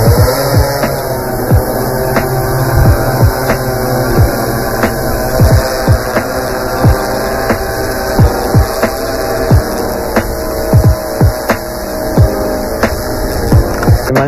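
Six-rotor drone hovering: a steady multi-pitched rotor hum that rises in pitch just after the start, broken by frequent short, sharp knocks.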